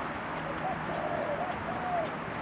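A bird calling in a string of short notes that rise and fall, over a steady outdoor hiss.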